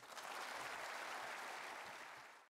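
An auditorium audience applauding steadily at the close of a speech, the clapping starting right after the speaker's last words.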